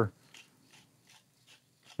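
Wooden pepper mill grinding black peppercorns: a run of faint grinding clicks.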